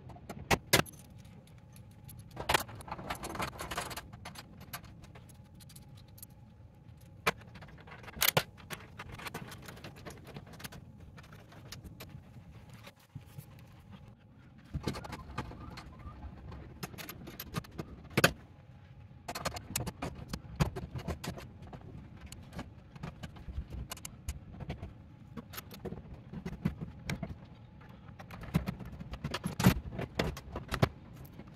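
Metal clinking, knocking and scraping from hand work on steel electrical panel boxes, as knockouts are opened and cable connectors and the service cable are fitted. Sharp clicks come at irregular intervals over a low handling rumble.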